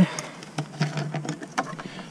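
Light clicks and knocks of a water hose and its Hozelock fitting being handled, with a few steps on gravel.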